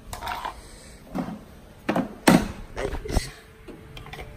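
A handful of separate knocks and clicks from plastic appliances and a power cord being handled as a bread maker is plugged in, the loudest a little after two seconds in.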